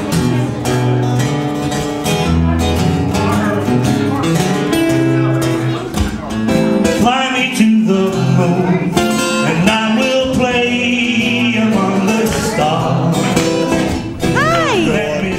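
Acoustic guitar strummed steadily while a man sings a country song live.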